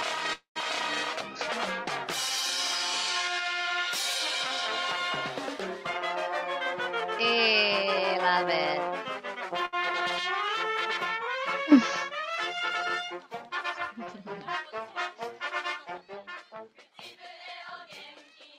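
Marching band brass instruments playing held notes and sliding pitch glides. After about thirteen seconds the playing breaks up into short, scattered, quieter notes.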